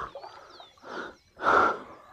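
Kayak paddle blade dipping and pulling through calm water: two splashy strokes about half a second apart, the second louder.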